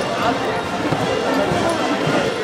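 Many people's voices chattering at once, with the irregular footsteps of a group walking over paving stones.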